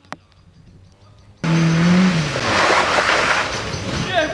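Rally car engine and tyre noise that starts abruptly about a second and a half in: the engine note holds, then falls, under a loud rush of tyre and gravel noise. Before it there is only faint background and a single click.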